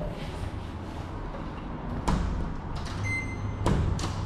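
Apartment door being pulled open after a struggle with the lock, with a sharp click about two seconds in and another clack near the end, over a low rumble. A brief high electronic beep sounds between the two clicks.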